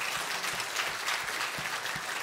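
Congregation applauding: many hands clapping at a steady level.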